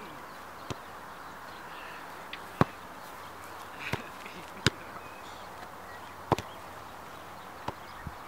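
Sharp, separate knocks of a football being struck or bounced, about six of them a second or two apart, over a steady outdoor hiss.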